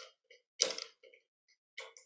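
A handful of short clicks and crackles while a high-voltage DC power supply is being worked to get it running again. The loudest comes about half a second in, with smaller ones following.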